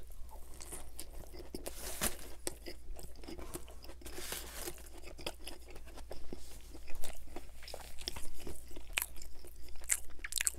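Close-miked chewing of a McDonald's Junior Chicken sandwich, a breaded chicken patty with lettuce in a soft bun: irregular crunches and mouth clicks, a few louder near the seven-second mark.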